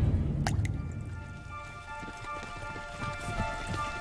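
Background documentary score: a low, rumbling musical hit dies away, two sharp ticks come about half a second in, then soft sustained high notes hang on quietly.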